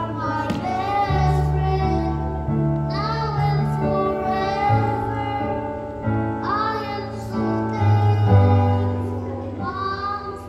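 A young boy singing a song into a microphone over an instrumental accompaniment of held bass notes and chords.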